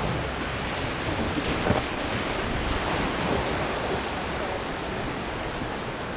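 Whitewater river current rushing and splashing around an inflatable raft, a steady even rush of water, with wind buffeting the camera microphone.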